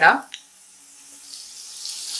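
Wet mint leaf paste dropped into hot oil and fried onions in a frying pan, starting to sizzle a little past halfway and growing louder toward the end.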